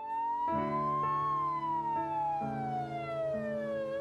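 A slow wailing siren, its pitch rising for about a second, falling for nearly three seconds, then starting to rise again near the end, over sustained chords of background music.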